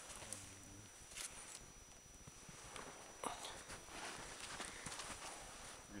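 A few faint, scattered knocks of a large Busse custom knife chopping into green wood, the sharpest about three seconds in.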